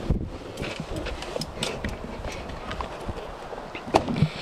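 Footsteps and camera-handling scuffs: irregular light knocks over a low rumble of wind on the microphone, with a sharper knock at the start and another near the end.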